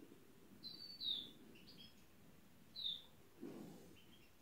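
Faint bird chirps: a few short, high, quick calls spaced a second or two apart, with a soft low rustle near the end.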